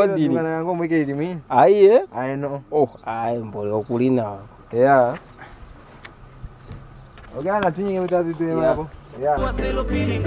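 A man's voice chanting a wavering, drawn-out "iya iya" refrain in several spells, over a steady high-pitched buzz. Near the end, music with a heavy bass beat comes in.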